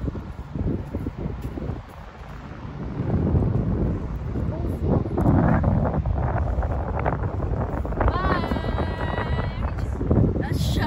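Wind buffeting the microphone in gusts, growing stronger about three seconds in. Near the end, one drawn-out high call with many overtones sounds for about a second and a half.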